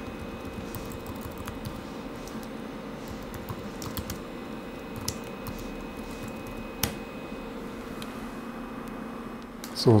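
A computer keyboard being typed on, in short scattered runs of key clicks, over a steady machine hum.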